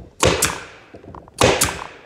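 Pneumatic stapler loaded with half-inch staples fires twice into wood, about a second apart. Each shot is a sharp crack with a short ringing tail.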